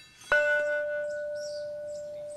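A bell struck once about a third of a second in, its note ringing on and slowly fading.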